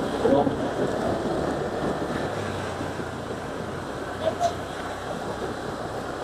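Motorcycle riding along a street: steady wind rush over the microphone with the engine's low hum underneath.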